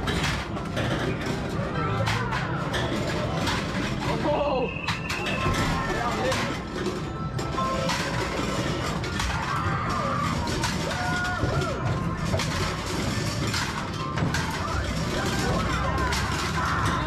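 Busy arcade din: overlapping crowd chatter and game-machine music and beeps, with sharp clacks of plastic rings hitting the bottle targets of a ring toss game.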